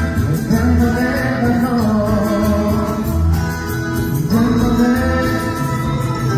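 Two male singers singing live into microphones over amplified backing music with a steady, repeating bass beat.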